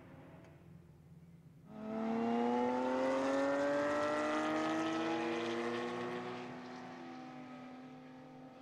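Porsche 911 GT3 Cup race car's flat-six engine comes in suddenly about two seconds in, accelerating with a steadily rising note. It then fades as the car pulls away down the track.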